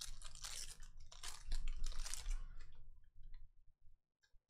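Foil wrapper of a trading-card pack being torn open and crinkled by hand: a run of crackling rustles, loudest in the middle, thinning out in the last second.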